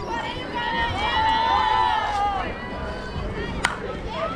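High-pitched voices calling and cheering during the pitch, then a single sharp crack of a softball bat hitting the ball about three and a half seconds in.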